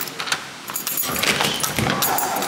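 A ring of keys jangling as a key is turned in a door's deadbolt lock, with sharp metallic clicks throughout.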